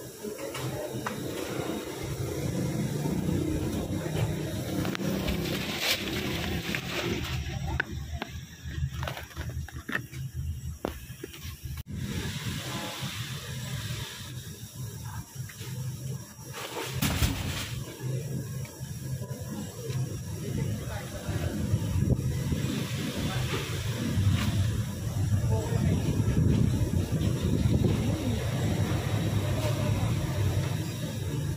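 Indistinct voices and background music, with a few knocks and one louder thump about seventeen seconds in.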